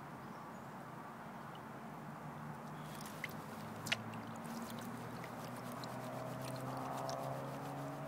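Water swishing and sloshing in a plastic gold pan as it is swirled and dipped in a tub of water to wash sediment over the riffles, with two small clicks a little past three and four seconds in.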